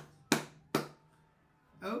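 Two sharp hand claps about half a second apart.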